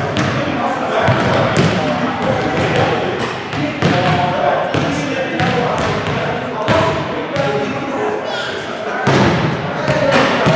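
Many voices talking at once in a school gymnasium, with no single voice clear, and a basketball thumping on the wooden floor from time to time.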